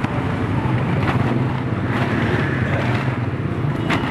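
A steady, loud low rumble with hiss, like a motor running, with a short sharp click about a second in and another near the end.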